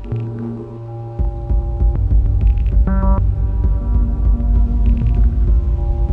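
Eurorack modular synthesizer playing a drone patch: sustained tones, with a deep throbbing bass coming in about a second in and a bright, buzzy note that comes back about every three seconds.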